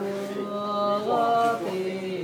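Chanting in long, held vocal notes; the pitch steps up about a second in and falls back near the end.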